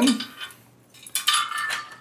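Steel lock pin pulled from a fifth-wheel hitch's jaw-release handle, the pin and its retaining chain clinking against the steel handle in a quick cluster of clinks in the second half.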